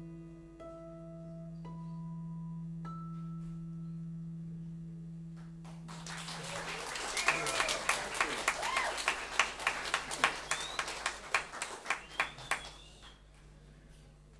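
Acoustic guitar closing a solo instrumental with a few single ringing notes that sustain and fade. Audience applause starts about six seconds in and dies away just before the end.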